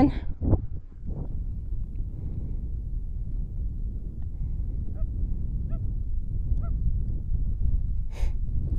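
Wind rumbling on the microphone. Three faint, short pitched calls come just under a second apart from about five seconds in.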